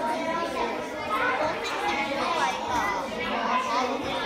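Children's voices and chatter, several talking at once in a classroom.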